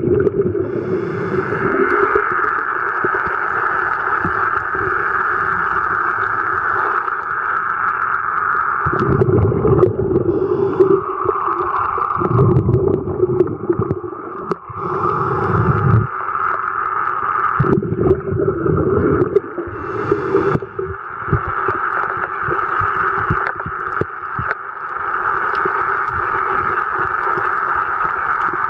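Underwater ambience picked up by a camera held under water: a steady drone with deep whooshing surges of water movement every few seconds in the middle stretch.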